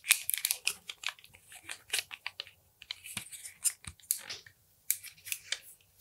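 Soft, irregular crackling and clicking as a small half-inch-barrel curling iron is handled and worked into coarse beard hair.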